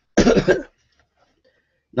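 A man coughing once: a single short, harsh burst about half a second long, just after the start.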